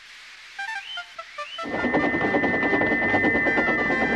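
A short run of quick stepped musical notes, then, about two seconds in, a steam locomotive's whistle shrieks on one steady high note over loud rushing train noise. The whistle is stuck open: its valve has jammed.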